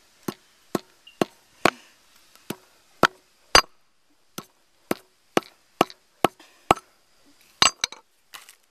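A hammer striking paving stones again and again, sharp separate knocks about two a second, with three quick blows close together near the end.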